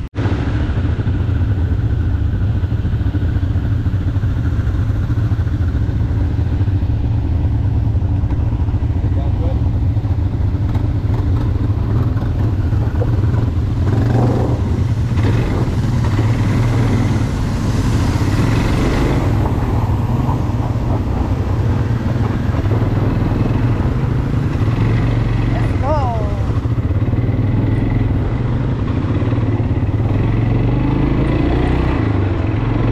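Quad ATV engine running steadily, heard up close from the rider's seat.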